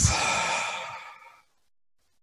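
A long, audible deep breath, fading away over about a second and a half.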